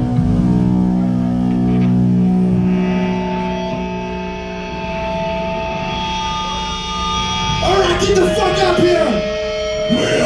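Amplified electric guitar and bass chords from a live band held and ringing out through the amps in a small room, with a voice shouting over the PA about eight seconds in.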